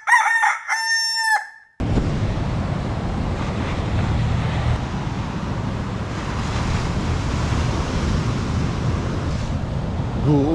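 A rooster crowing one full cock-a-doodle-doo, about two seconds long, that cuts off abruptly. Then a steady rush of surf and wind on the microphone.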